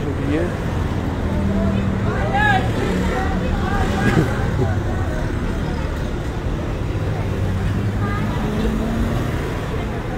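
Road traffic passing close by: cars and vans driving past one after another, their engines giving a steady low hum.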